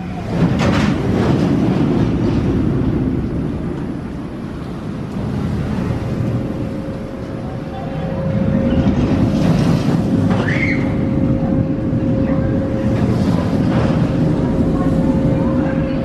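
Steel roller coaster train running along its track through the inversions, a loud rumble that swells twice, first in the opening few seconds and again from about eight seconds on. A brief rising high cry rides over it about ten seconds in, and a steady hum sets in partway through.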